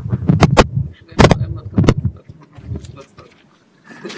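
About four sharp, loud knocks in the first two seconds over low voices, then quieter.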